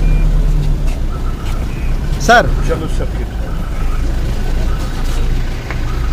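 Car running with a steady low rumble as it moves off, recorded from beside its open rear window; a man calls out once about two seconds in.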